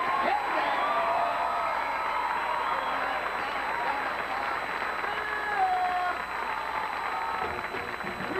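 Studio audience applauding and cheering, with whoops and shouts over steady clapping.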